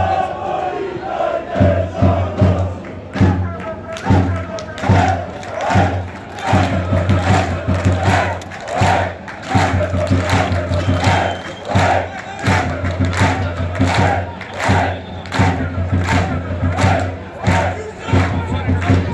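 A group of football supporters chanting rhythmically in unison, with sharp strikes keeping a steady beat at a little more than one a second.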